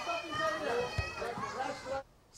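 A group of children shouting and talking over one another, many voices at once.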